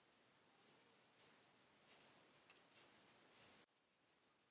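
Near silence, with a few faint, short swishes of yarn being drawn and wrapped around a plastic pom-pom maker. The faint background hiss cuts off suddenly near the end.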